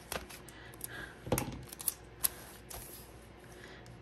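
A few light, separate clicks and taps as metal tweezers and a clear sticker are handled over a paper planner page, the sharpest click about a second and a half in.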